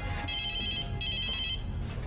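A phone's electronic ringtone: two short rings of warbling, trilled high tones, each a little over half a second long, with a brief gap between them.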